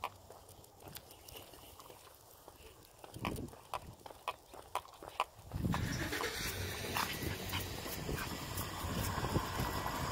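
Pomeranians walking on a concrete sidewalk: light, irregular clicking of their claws and leash hardware. A little over halfway through, a louder steady rushing noise sets in and continues, with scattered clicks.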